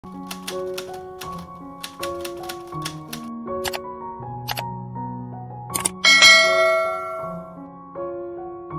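Intro jingle of soft sustained melodic notes over a run of quick sharp clicks, then a bright bell-like ding about six seconds in, the loudest sound, ringing out over the next second.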